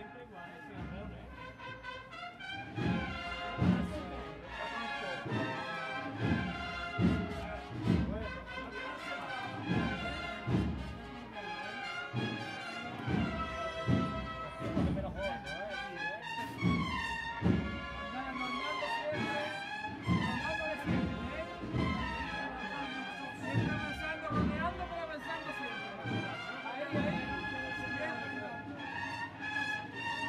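A brass band playing a slow processional march, with sustained brass melody over a steady drumbeat of about one stroke a second.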